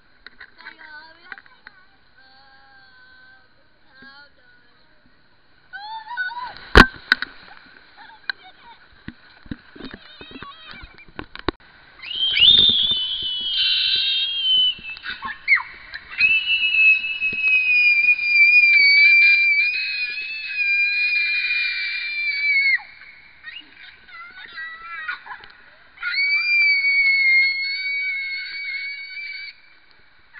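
Children screaming as they ride an inflatable ring down a water slide, in long, high, held screams with wavering pitch. The screams start about twelve seconds in, break off, and come again near the end. A single sharp knock sounds about seven seconds in, followed by a few lighter clicks.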